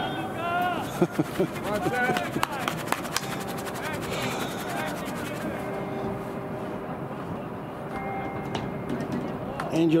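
A bell ringing in rapid strokes for a few seconds, among voices calling out.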